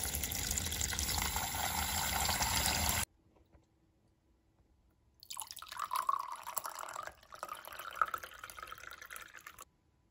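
A stream of water running into a ZeroWater filter jug's plastic top reservoir and splashing onto the filter cartridge, stopping abruptly about three seconds in. After a short quiet, water pours from the jug's spout into a glass for about four seconds, a softer, higher splashing.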